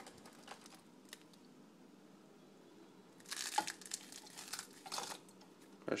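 A handful of mixed pecans, walnuts and sliced almonds being handled: a couple of seconds of dry rustling and crunching starting about halfway in.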